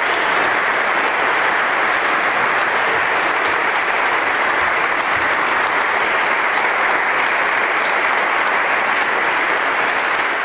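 A seated audience applauding, many hands clapping steadily.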